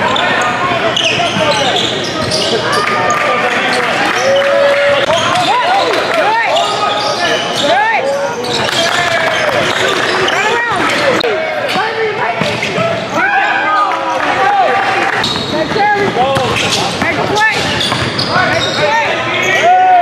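Live basketball game in a large gym: a basketball being dribbled and bounced on a hardwood court, sneakers squeaking, and players' indistinct voices calling out.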